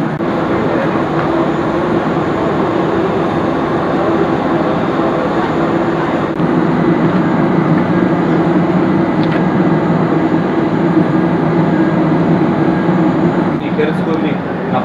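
A steady engine drone with a low hum, typical of machinery running on an airport apron, growing a little louder about six seconds in.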